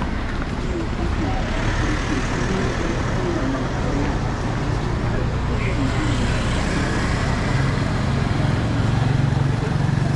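Busy street ambience: steady traffic noise with scattered voices of passersby. Over the last few seconds a motorcycle tricycle's engine hum grows louder as it comes close.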